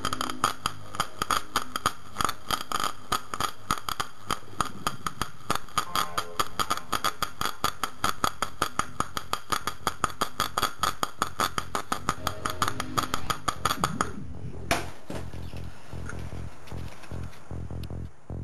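High-voltage arc between ferrocerium (lighter-flint) electrodes submerged in a sodium carbonate electrolyte, crackling with rapid, irregular snaps. The snaps stop near the end, after one last snap, leaving a steady low hum.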